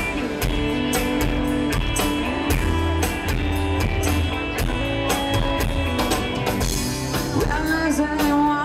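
Live rock band playing a song's instrumental intro: electric guitar and bass over a steady drum-kit beat. A voice comes in near the end.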